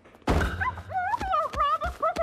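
A heavy thud as a body flops face-down onto a heap of clothes. It is followed by a muffled, wavering wail with quick soft thumps from fists and feet beating the pile in a tantrum.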